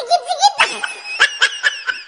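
A baby laughing in quick, high-pitched giggles that come in short repeated bursts.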